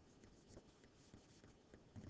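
Faint scratching and light tapping of a stylus on a tablet screen while a circle is drawn by hand.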